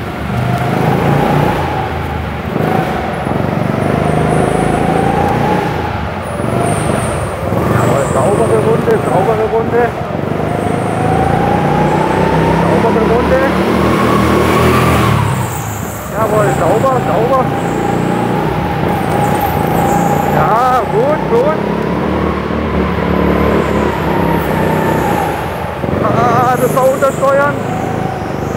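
A 9 hp go-kart's engine revving up and down through a lap: the pitch climbs along the straights and drops off sharply about halfway through as the driver lifts for a corner, then climbs again. Short wavering tyre squeals come in several corners on the low-grip floor.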